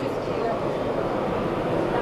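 Indistinct background voices over a steady hum of hall noise, with no single sound standing out.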